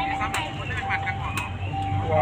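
Indistinct chatter of people talking nearby, with a steady high tone that comes and goes and two sharp clicks about a second apart.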